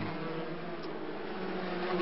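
125cc two-stroke racing motorcycles running at speed, a steady engine note from several bikes together.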